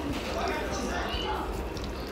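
Chopsticks and a spoon mixing oily noodles and egg yolk in a bowl, giving soft wet stirring and light clicks against the bowl, under low voices.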